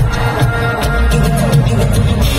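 Live dance-pop song played through an arena sound system, with a heavy bass beat and light percussion.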